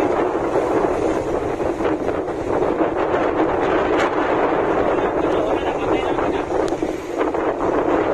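Strong wind buffeting a phone's microphone on a ship's deck in heavy weather: a steady, loud rushing noise, with a couple of faint clicks partway through.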